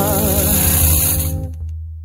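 MPB song: a sung note held with vibrato over sustained instrumental backing and bass. The music fades into a brief pause near the end.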